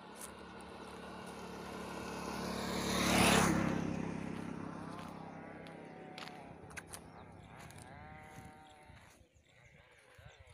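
A motorcycle approaches and passes close by, loudest about three seconds in, then fades away. In the second half, animals bleat several times, with a couple of sharp clicks.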